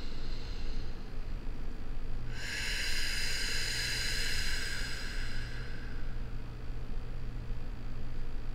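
A person's long, slow breath out, a soft hiss of about three seconds that starts a little after two seconds in and fades away, over a steady low room hum.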